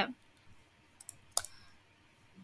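A few faint computer mouse clicks, the loudest about a second and a half in.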